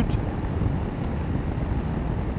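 BMW F850GS parallel-twin engine running at a steady cruise of about 80 km/h, blended with an even rush of wind and road noise.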